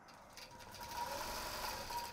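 Long-arm quilting machine running on its own, stitching a pantograph pattern through the quilt sandwich. It runs quietly with a steady hum and a faint whine, growing louder over the first second.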